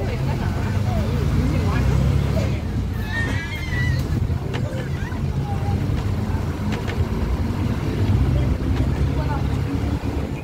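Steady low rumble of a running vehicle engine, heard from a moving vehicle that carries the microphone. People's voices sound faintly, mostly in the first few seconds.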